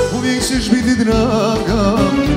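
Live band music: violins playing a wavering, ornamented melody over a steady bass line.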